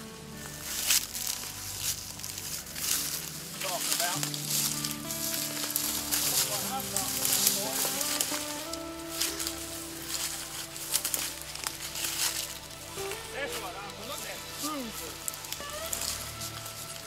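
Background music of sustained chords over a dense crackling and rustling of dry grass and leaves as someone walks through brush.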